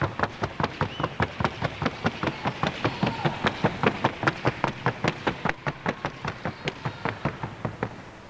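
Paso fino horse's hooves striking a wooden sounding board in a rapid, even run of sharp knocks, about six a second, as it performs its fast four-beat gait. The hoofbeats stop shortly before the end as the horse steps off the board.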